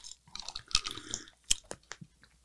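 Close-miked sipping and swallowing: small wet mouth clicks and gulps of a drink, with a few sharper clicks.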